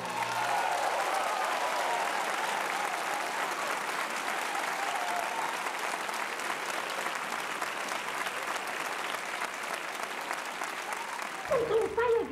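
Large theatre audience applauding steadily after a song. The applause cuts off suddenly near the end, where the soundtrack of an old film begins.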